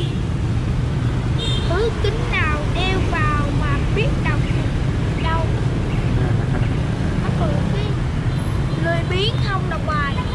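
Steady low rumble of city street traffic, with voices talking over it.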